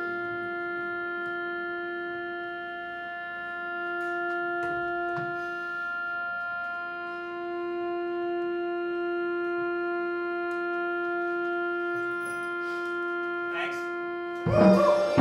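A single sustained drone note from a live band, one steady pitch with bright overtones held unchanging, with a few faint clicks.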